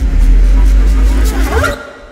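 Grand piano played from inside the case by hand on the strings, giving a deep rumble with a scraping noise over it that fades near the end.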